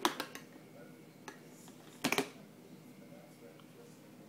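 Sharp clattering knocks of a baby spoon and plastic bowl on a plastic high-chair tray: a quick cluster at the start, a single tap, then another cluster about two seconds in.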